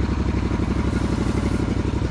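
Small engine of a ride-on concrete power buggy idling steadily close by, with a rapid even pulse.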